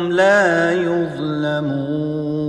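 Melodic Qur'anic recitation: a single voice holding long notes with ornamented turns that rise and fall. The pitch steps down about a second in and is held.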